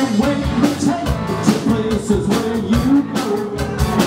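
Live rock band playing: electric guitars and electric bass over a drum kit keeping a steady beat.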